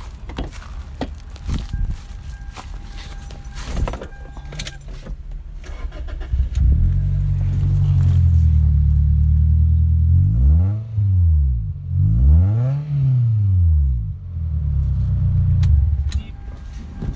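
Toyota Celica's 1.8-litre four-cylinder engine with an aftermarket exhaust, heard from behind the car. After some clicks and knocks and a steady electronic tone, it starts about six and a half seconds in, settles to idle, is revved briefly twice with the pitch rising and falling each time, then idles.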